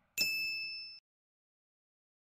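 A single bright metallic ding, struck once and ringing briefly with a high tone, then cut off abruptly about a second in; silence follows.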